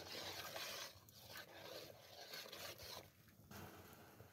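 Dry pasta tipped into a pot of boiling water, a faint rustling, scraping hiss in two spells, the first within the first second and the second from just after one second to about three seconds in.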